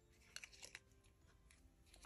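Near silence: room tone, with two or three faint clicks from small hand handling about half a second in.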